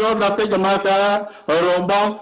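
A man's voice reading a text aloud in a level, chant-like monotone, with a brief pause a little past halfway.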